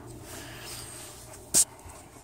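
A low, steady hum with a single short, sharp click or tap about one and a half seconds in.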